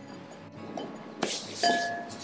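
A glass mixing bowl clinks once, sharply, about a second in as a ball of bread dough is pressed into it, with a brief ringing after. Quiet background music plays underneath.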